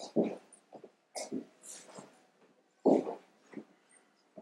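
A woman crying in short, breathy sobs, about six in four seconds, the loudest just after the start and about three seconds in.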